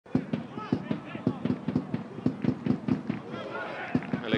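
Live football-match sound from the pitch: voices calling, over a quick, fairly regular run of sharp knocks, about four a second.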